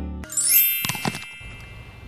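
Transition sound effect: a quick rising swoosh, then a bright chime whose tones ring and fade over about a second, with a short knock about a second in.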